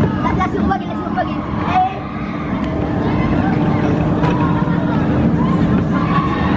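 Bolliger & Mabillard wing coaster train rumbling along its steel track, with people talking and crowd chatter around it and a steady hum underneath.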